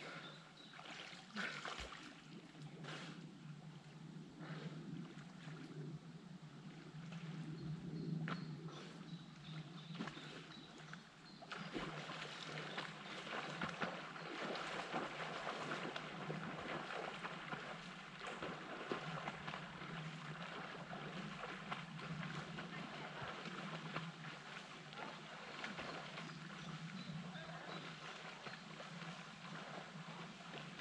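Small waves lapping and trickling against a wooden pier on a lake, a quiet steady wash of water. The hiss grows louder about twelve seconds in and stays up.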